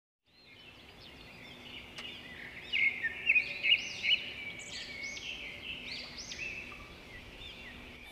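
A string of short, high, bird-like chirps that fade in, are loudest about three to four seconds in, then fade away, over a faint steady hum.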